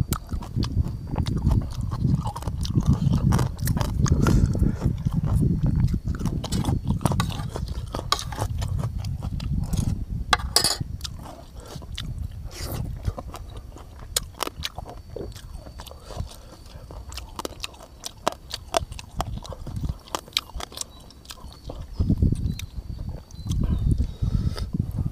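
Close chewing and lip-smacking of a man eating with his fingers, picked up by a clip-on microphone on his shirt. Irregular low thuds, heavier in the first half, come with many short sharp mouth clicks.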